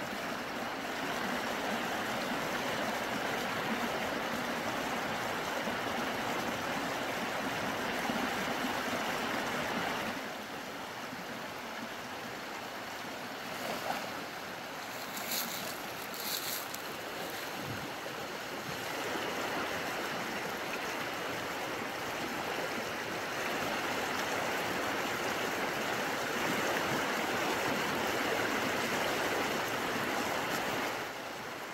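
Shallow stream rushing over rocks, a steady water noise that drops somewhat about ten seconds in and grows again a little before twenty seconds. Two short high clicks sound about halfway through.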